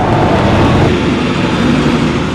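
Motorcade vehicles driving past close by: a loud, steady rush of engine and tyre noise.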